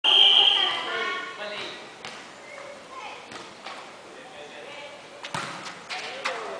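A loud shout in the first second and a half, then a volleyball being hit several times, sharp smacks with the last two near the end, amid players' voices.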